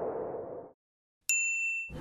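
A single bright ding, a high chime that rings for about half a second, comes after a short silence. Before it, the tail of a low, noisy intro sound effect cuts off abruptly under a second in.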